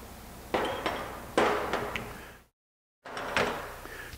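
Steel wrenches clanking against the rifle barrel and the workbench as they are worked and put down: two sharp metallic knocks about a second apart, each ringing briefly, then a short dead dropout and a third knock.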